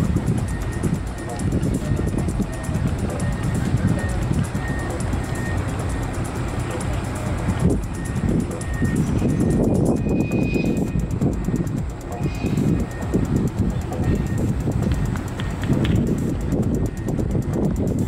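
Wind buffeting the microphone in gusts, with faint distant voices behind it and a short high beep repeating evenly through the first half.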